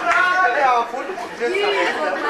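Speech: performers on stage speaking their lines in Norwegian.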